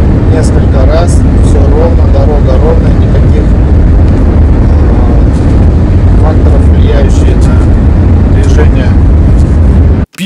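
Steady low road-and-drivetrain rumble inside a Chery SUV's cabin at highway speed, heard during a drive to check for the body vibration that owners report from about 80 km/h. Faint voices can be heard in the background now and then.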